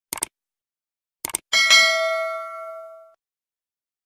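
Subscribe-button sound effect: two quick mouse clicks, two more about a second later, then a single bell ding that rings out and fades over about a second and a half.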